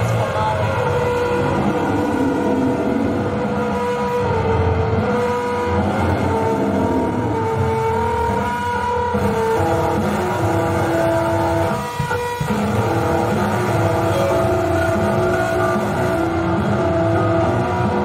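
Powerviolence band playing live: loud distorted guitar and drums, with held notes that shift pitch every second or two and a brief drop near the middle.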